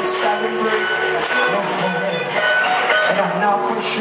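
Live band music with guitar, and a man's voice over it.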